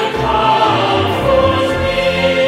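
Background music with choral singing in long, sustained notes.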